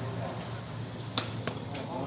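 A sepak takraw ball struck with a sharp smack about a second in, followed by two lighter taps, over a steady background murmur.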